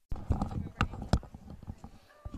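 Sound cutting in suddenly from silence: a run of irregular knocks and clicks over a low rumble, with three sharper clicks in the first half, tailing off toward the end.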